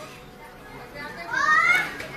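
Low hall background noise, then about a second and a half in a child's high-pitched voice cries out briefly, rising in pitch.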